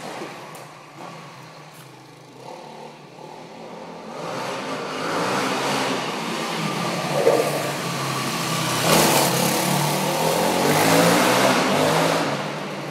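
Yamaha WR450F dirt bike's single-cylinder four-stroke engine, quiet at first, then growing louder from about four seconds in as the bike rides toward the camera, and loudest over the last few seconds as it is revved.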